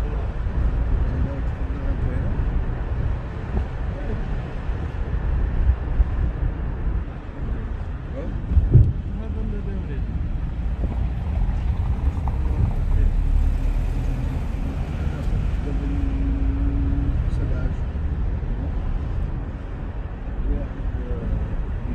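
Low, steady rumble of a car driving along a city street, with road and engine noise and a short knock about nine seconds in.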